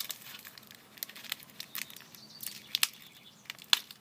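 Plastic packaging of a line level crinkling and clicking as it is opened by hand, in irregular small crackles with a couple of sharper snaps near the end.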